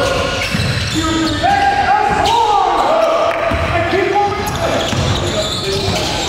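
Basketball bouncing on a gym's wooden floor during play, with repeated low thuds. Over it a voice holds and steps between pitched notes, like singing.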